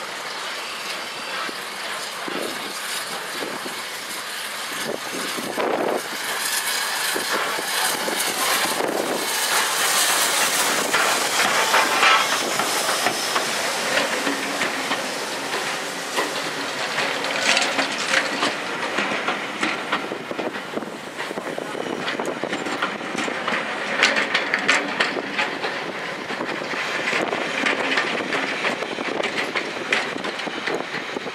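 Steam-hauled passenger train drawing into the platform, growing louder as it nears, then its coaches rolling slowly past with repeated wheel clicks over the rail joints.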